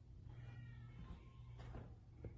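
A faint, short high-pitched cry about half a second in, over a low steady hum, with soft footfalls near the end as the camera moves toward the stairs.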